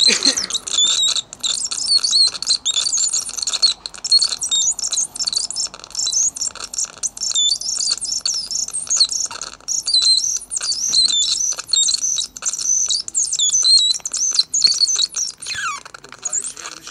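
Homemade low-tech touch synthesizer played with the fingertips on its metal contacts, giving a dense run of high, rapidly warbling chirps and quick up-and-down pitch sweeps, with a falling sweep near the end.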